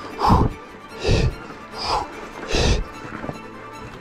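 A man breathing hard and rhythmically from the effort of hand-cranking a handcycle up a steep grade, four heavy breaths less than a second apart, over background music.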